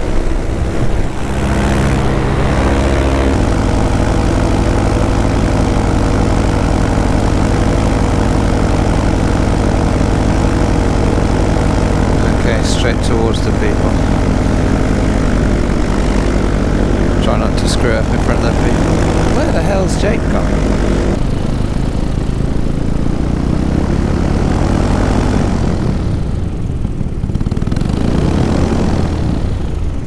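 Paramotor's two-stroke engine and propeller running steadily under power, heard from the pilot's seat with wind rushing past. About twenty seconds in the engine note drops away and the wind noise carries on, as the power comes off for the descent.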